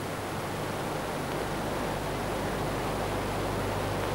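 Steady hiss with a low hum underneath and nothing else: the noise floor of an old analogue tape recording.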